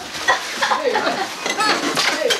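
Cellophane gift wrapping crinkling and rustling as a heavy gift is handled and lifted out of a cardboard box, with a few light knocks.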